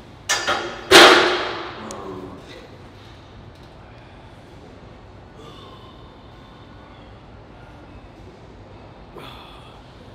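A loaded barbell set back onto the rack's hooks: two light knocks, then a loud metal clang that rings out for about a second.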